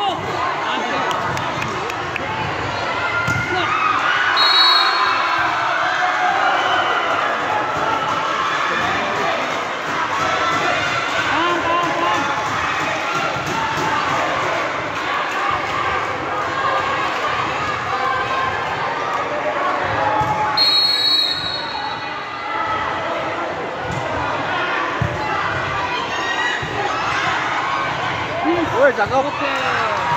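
Volleyball rallies in a sports hall: the ball is struck and hits the floor with sharp smacks, while a crowd of young spectators shouts and cheers without a break. A short high whistle sounds twice, about four seconds in and about twenty-one seconds in.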